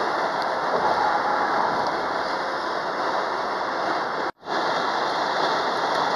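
Steady road and tyre noise inside a moving car's cabin at highway speed, an even rushing sound. It cuts out completely for an instant about two-thirds of the way through, then resumes.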